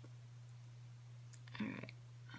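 Quiet room with a steady low hum; a woman says "all right" near the end.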